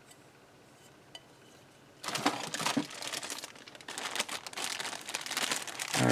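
Clear plastic bag of model-kit parts crinkling and crackling as it is handled, starting about two seconds in.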